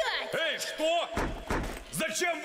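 Heavy thuds on a door, a couple of blows about a second in, amid a cartoon character's voice.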